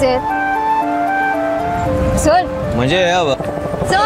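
Background music score of held melodic notes that step from pitch to pitch. In the second half a wordless voice glides up and down over it.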